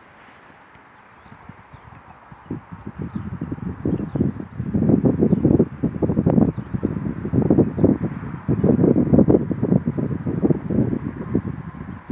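Low, irregular buffeting and rustling against a phone's microphone. It builds from about two seconds in and is loudest in the second half.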